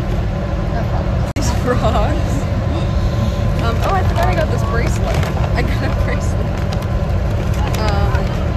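Steady low rumble of a moving bus heard from inside the cabin, with voices talking in the background. The sound cuts out for an instant about a second in.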